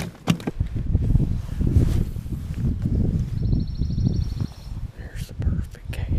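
Wind buffeting the camera microphone, a dense low rumble, with handling clicks and knocks and a brief ticking whir around the middle.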